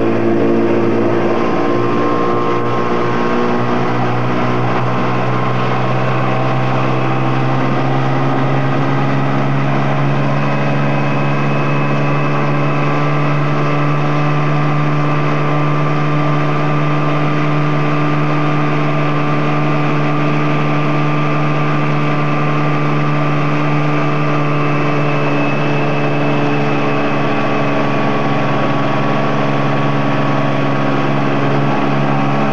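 Motorboat engine running at a steady speed and even pitch while towing a water skier.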